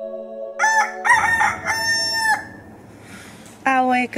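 A rooster crowing one full cock-a-doodle-doo in three parts, the last note held longest.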